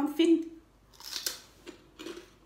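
A single crisp crunch about a second in, from biting into a piece of fried pork crackling.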